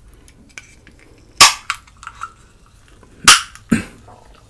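Three short, sharp, loud slurps as a drink is sucked through the built-in glass straw of a drinking glass: one about a second and a half in, then two close together near the end.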